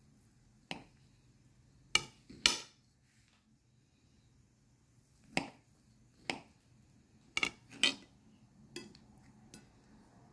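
Table knife clinking and knocking against a plate while slicing through a fruit cake: about nine short, sharp clicks at uneven intervals, some in quick pairs.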